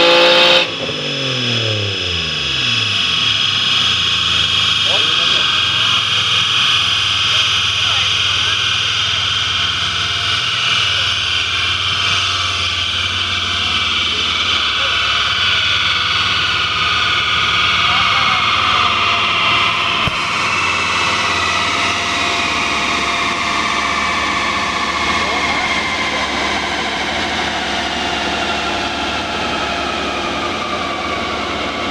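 Alfa Romeo 164's 3.0 24-valve V6 on a dyno, lifting off from a full-throttle pull about half a second in, its revs falling away quickly. Then a long whine that slowly falls in pitch as the wheels and dyno rollers coast down, over steady fan-like noise.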